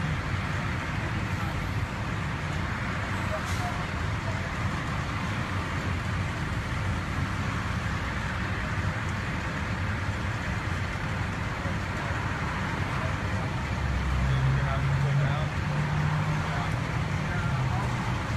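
Steady roadside traffic noise with people's voices in the background, and a low vehicle engine hum that grows louder near the end.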